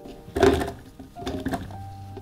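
Soft background music, with a dull thud about half a second in and a few lighter knocks after it as broken pieces of portobello mushroom drop into a plastic food processor bowl.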